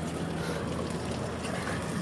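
Steady outdoor background noise, an even rushing hiss with no distinct event.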